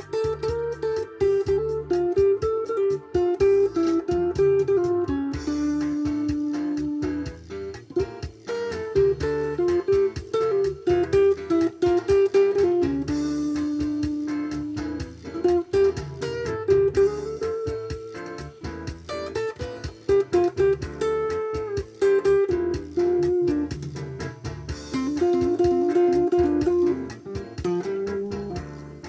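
Electric guitar playing a slow single-note melody, with a few long held notes, over a backing track of bass and drums.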